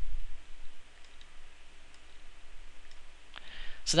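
A few faint computer mouse clicks over a steady low hiss, with a low thump at the very start.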